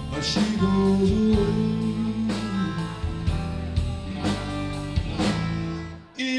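Live blues-rock trio playing: electric guitar and bass over a drum kit, with drum strikes about twice a second.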